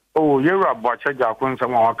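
A man speaking over a telephone line, his voice cut off above the narrow phone band.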